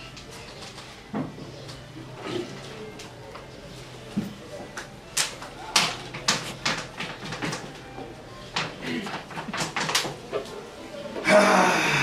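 A string of sharp, irregular knocks and clicks, several a second through the middle of the stretch, over faint low voices, then a short, loud burst of several voices together near the end.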